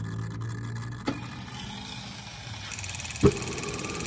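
Model gas-turbine engine beginning its start sequence: a low hum stops with a click about a second in, then a faint high whine starts near three seconds in, with a sharp click just after.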